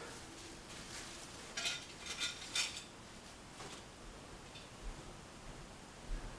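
Faint, scattered clicks and clinks of hard clear plastic model-kit parts being picked up and handled.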